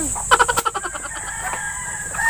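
A rooster crowing: one long call that begins about a second in and is still going at the end, after a brief run of rapid calls near the start.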